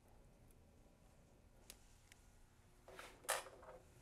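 Near silence: room tone, broken near the end by one brief soft noise.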